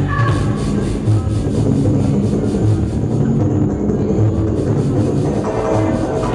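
Loud live electronic music played on synthesizers and a laptop, with a steady pulsing bass. A short high melodic figure sounds at the start; the treble then drops away for a couple of seconds in the middle and the high notes come back near the end.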